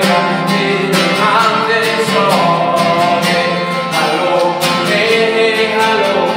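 Acoustic guitar strummed in a steady rhythm while a man sings over it.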